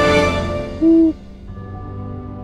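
A single short owl hoot about a second in, over closing music that fades and gives way to a quieter, steady music bed.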